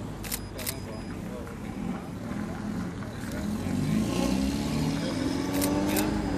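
A car engine passing and accelerating, its note rising and getting louder over the last couple of seconds. A camera shutter clicks twice near the start and once near the end, over background voices.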